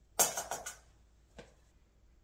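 Granulated sugar poured from a measuring cup into a stainless steel mixing bowl, a short gritty rush of about half a second, followed by a single sharp click.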